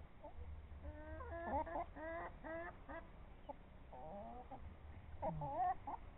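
Chickens clucking: a run of short pitched calls about a second in, a few more around four seconds, and another burst near the end.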